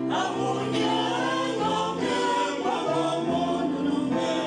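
Choir singing a hymn, voices holding long notes over a low accompaniment.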